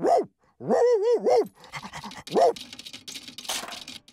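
A cartoon dog's short whining, yipping calls, followed from about a second and a half in by a run of quick noisy sniffs and snuffles as it noses at a floor grate.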